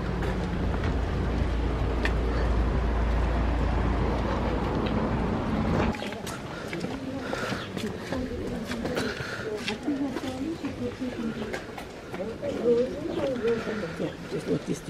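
A steady low rumble for about the first six seconds that cuts off abruptly, followed by indistinct background voices of people talking.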